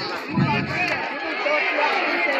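Crowd chatter: many voices talking over each other at once.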